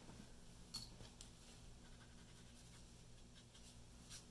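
Near silence: a steady low room hum with a few faint light ticks and scratches, the clearest about three-quarters of a second in and several more near the end.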